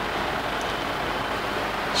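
Steady, even background noise (room tone) with no distinct event.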